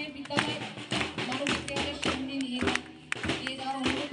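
Scattered hand claps and hand slaps from a crowd, irregular and several a second, over background music and voices.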